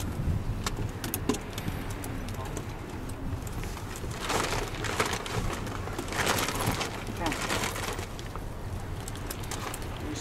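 Outdoor ambience with wind rumbling on the microphone, faint voices in the background, and two louder rushing gusts of noise about four and six seconds in.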